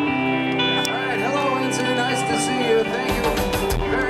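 Live guitar on stage holding sustained, ringing chords, with voices in the crowd underneath.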